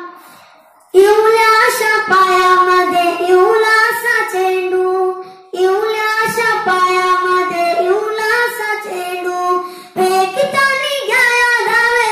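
A boy singing a short song in Marathi solo into a microphone, in sustained phrases with brief breaths or pauses at the start, about five and a half seconds in, and about ten seconds in.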